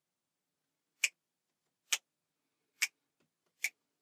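Finger snaps: four sharp, dry clicks, about one a second, with silence between them.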